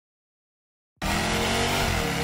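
Silence for the first second, then a sudden, steady rush of noise over a low droning hum: an intro sound effect opening the track.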